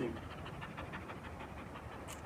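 A German Shepherd dog panting quickly and steadily, faint and even.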